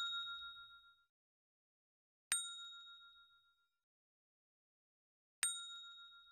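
A bright bell-like ding sound effect, struck twice (about two seconds in and near the end) and ringing out for about a second each time, with the fading tail of an earlier ding at the start; each ding marks another letter Q being circled on the worksheet.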